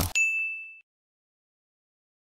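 A single bright electronic ding: one clear high tone that rings out and fades away within about half a second, the closing sound of a commercial.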